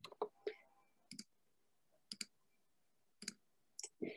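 Computer mouse clicking: a handful of short, soft clicks spread over a few seconds, some in quick pairs, with little else between them.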